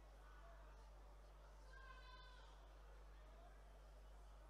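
Near silence: a steady low hum of the recording with faint indistinct murmurs, and one brief, faint high-pitched cry about halfway through.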